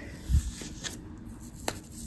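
Hands handling a doll's foot and its packaging foam: faint rustling, a dull low thump shortly after the start and one sharp click near the end.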